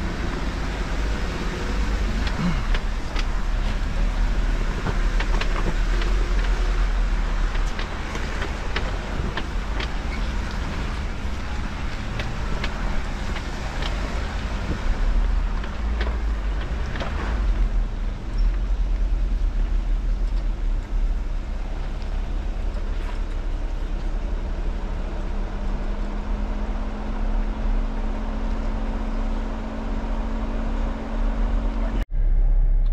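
Jeep Wrangler Rubicon crawling over a rocky trail: a steady low engine and drivetrain rumble with scattered sharp knocks and clunks from rocks under the tyres and the suspension, busiest in the first half. A steadier engine hum comes in near the end.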